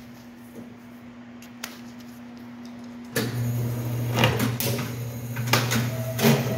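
Semi-automatic poly strapping machine running with a steady low hum. About three seconds in, its motor kicks in and the hum grows much louder, with a few sharp clicks as the poly strap is handled and drawn tight around the tile boxes.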